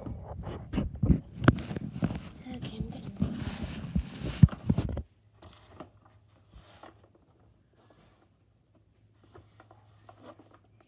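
Phone being handled close to its microphone: fingers rubbing and knocking against it for about five seconds, ending in a sharp knock as it is set down. After that it goes quiet, with a faint low hum and a few soft ticks.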